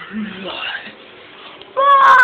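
Quiet, scattered vocal sounds, then near the end a person's loud, high-pitched shriek starts suddenly and is held on one pitch.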